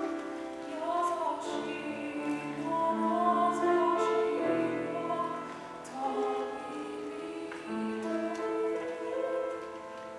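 A woman singing a slow Japanese song into a handheld microphone, accompanied by grand piano.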